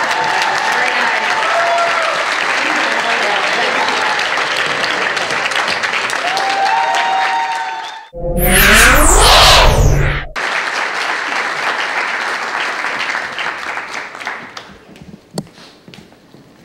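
Audience applauding, with a few whoops. About halfway through, a loud two-second whooshing transition effect with swirling pitch sweeps and a low rumble cuts over it. The applause then returns and fades out near the end.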